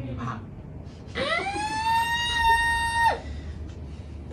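A single high-pitched wail that rises quickly, holds one steady pitch for about two seconds, then drops sharply and cuts off, over a low background hum.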